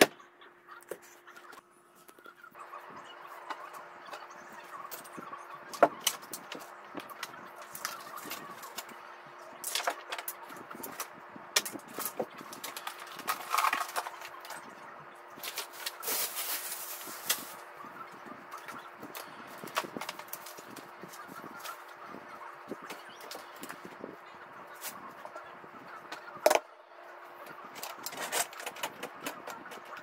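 Knocks, clicks and scrapes of household objects being picked up, set down and moved, with a louder scraping stretch past the middle, over a steady hum.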